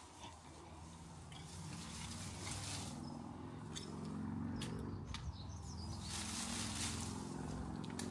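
Quiet digging with a garden fork in loosened soil around an old shrub's roots, with two stretches of scraping. A few bird chirps and a low steady hum sit underneath.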